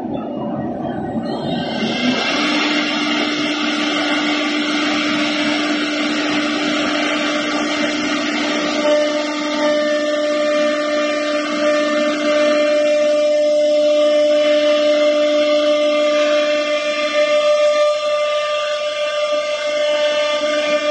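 CNC router spindle cutting a wood-based board: a steady electric-spindle whine over the hiss of the bit chipping the board. The cutting noise builds about two seconds in, and a second, higher whine joins about halfway through.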